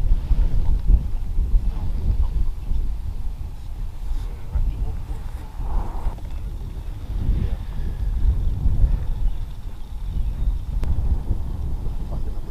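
Wind buffeting the microphone: a deep, gusty rumble that rises and falls unevenly, with faint indistinct voices under it.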